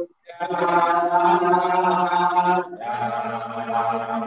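Male voices chanting a Javanese Buddhist prayer in long drawn-out notes, heard over a video call. There is a brief break just after the start, then one long held note, then a lower one that carries on past the end.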